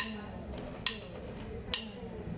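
Drummer counting the band in: three sharp stick clicks, evenly spaced a little under a second apart, over a low room hum.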